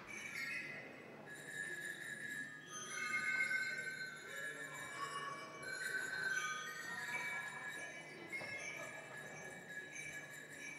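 Ringing percussion in a free improvisation: high bell-like tones struck one after another every second or so and left to ring, overlapping into a shimmering wash.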